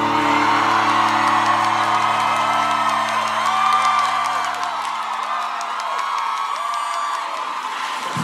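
Live concert crowd singing along and whooping over a held low chord from the band, which fades out about seven seconds in.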